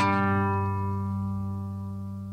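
A single low musical note struck once at the start and left to ring, fading slowly: the closing logo sting of the video's outro.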